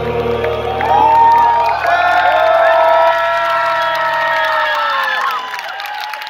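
A live band's final chord rings out under a crowd cheering and whooping. The chord dies away about four and a half seconds in, leaving the cheering.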